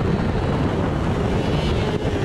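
Onboard sound of a 600cc Yamaha supersport racing motorcycle at speed: the engine running hard under steady throttle, mixed with heavy wind rush over the camera microphone.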